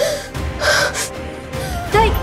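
A woman crying in sharp, breathy gasping sobs, a few of them in the first second, over a background music score of steady held notes.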